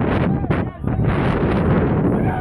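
Wind buffeting a phone microphone, with several people's voices and shouts mixed in.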